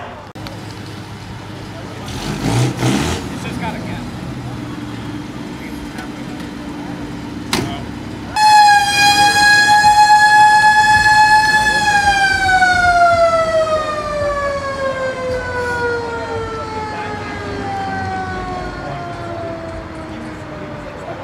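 A siren comes on suddenly about eight seconds in, holds one high pitch for a few seconds, then winds steadily down in pitch as it fades. Before it, a couple of brief loud noises over background chatter.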